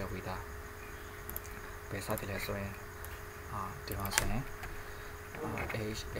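Indistinct voices over a steady electrical hum and hiss, with a few faint clicks.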